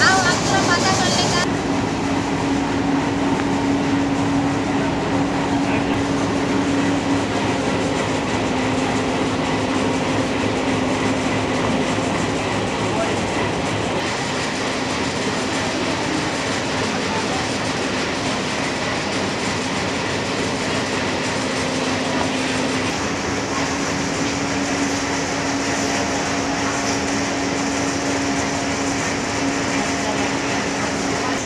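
Railway station platform noise: a standing train's steady low hum over the general din of the station, with voices in the background.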